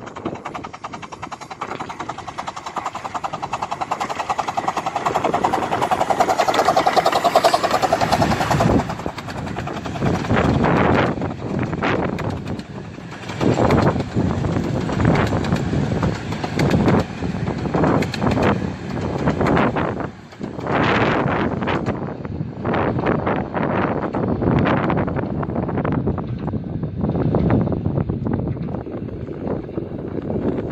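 A 15-inch-gauge Romney, Hythe & Dymchurch Railway steam locomotive working a passenger train past, its rhythmic exhaust growing louder as it approaches and peaking about eight seconds in. After that, the coaches roll by under heavy, gusting wind buffeting on the microphone.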